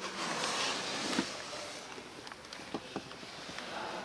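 Rustling of clothing against the seat as a person climbs into a car and sits down, ending in a light knock about a second in, followed by a few faint clicks.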